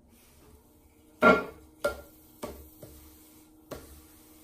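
Potter's electric wheel running with a steady hum while a hand taps an upside-down clay bowl on the wheel head five times, the first tap the loudest, tap-centring it for trimming.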